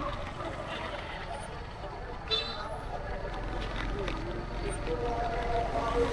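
Busy street traffic heard from a moving motorcycle: a steady low rumble of engines and road, with people's voices in the mix. There is a sharp click about two seconds in, and a steady held tone sets in near the end.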